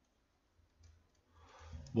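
A pause of quiet room tone with a faint click about a second in, then a voice starting to speak near the end.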